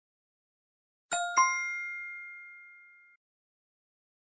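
Two-note chime sound effect: two quick bright dings about a quarter second apart, the second louder, ringing out for about two seconds before cutting off. It is the correct-answer signal in a quiz.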